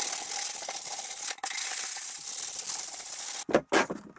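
80-grit sandpaper disc rubbed by hand along a plywood edge, smoothing the rough saw cut: a steady dry scratching hiss with a brief break just over a second in, then a few short quick strokes near the end.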